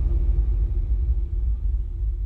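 Deep low rumble with a faint steady hum above it, slowly fading out: the tail of an end-screen outro sound effect.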